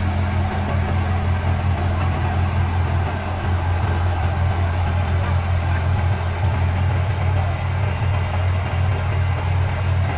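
Diesel engine of a Sumitomo asphalt paver running steadily with a low, even drone as the machine creeps slowly along.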